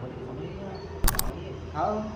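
A quick cluster of two or three sharp clicks about a second in, with a brief voice sound near the end.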